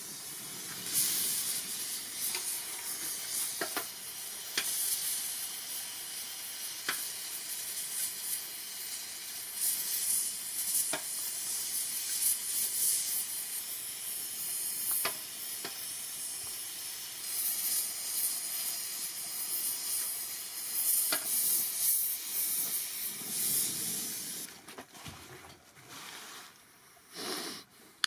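Oxy-propane torch with a six-flame head hissing steadily while brazing a steel plate, with a few sharp ticks scattered through it. The hiss drops away near the end.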